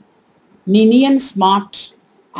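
Only speech: a woman talking, after a short pause at the start.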